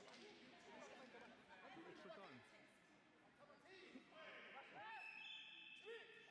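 Faint chatter of many voices in a sports hall, people talking and calling out over one another. About four seconds in, a steady high tone joins in.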